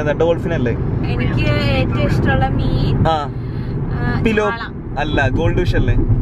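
Speech, mostly a woman talking, over the steady low rumble of a car's cabin.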